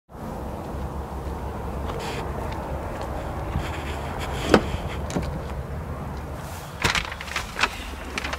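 2000 Ford Expedition's 4.6L V8 idling with a steady low rumble, with a few sharp clicks and knocks of handling, the loudest about halfway through and a cluster near the end.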